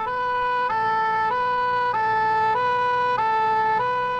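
Ambulance two-tone siren sounding, alternating steadily between a higher and a slightly lower note, each note held a little over half a second.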